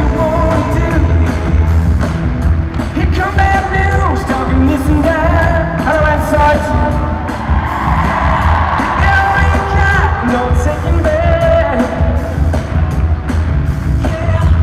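Live pop song over an arena PA: a man sings into a handheld microphone over a steady beat.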